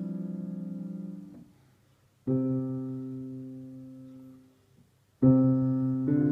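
Digital piano played slowly with both hands by a young beginner: simple chords, each held and left to fade. A held chord fades out in the first second and a half, then after a near-silent gap a new chord is struck a little over two seconds in, and another just past five seconds.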